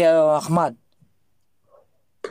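Speech only: a man talking briefly, stopping under a second in.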